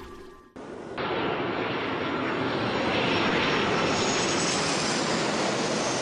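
A steady rushing noise cuts in abruptly about half a second in, just as the music fades out, and holds, swelling a little near the middle.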